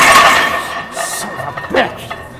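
A man's strained shout at the very start as a heavy bench press is locked out. About a second in comes a short metallic clink of the loaded barbell going back into the rack, all over background music.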